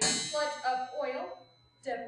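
A metallic clang at the very start, its high ring fading over about a second and a half, with a wavering pitched line under it that stops a little past the first second.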